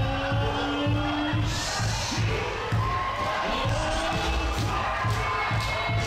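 Dance music with a steady kick drum about twice a second and held, sliding tones, with a crowd cheering underneath.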